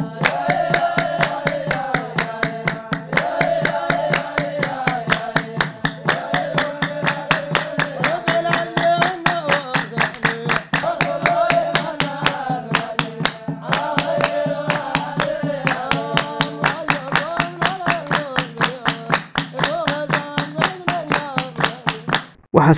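A group of voices chanting a devotional song together, kept in time by steady, rhythmic hand-clapping from the whole group.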